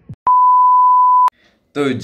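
An electronic bleep tone, one steady pure high tone about a second long, starting and stopping abruptly.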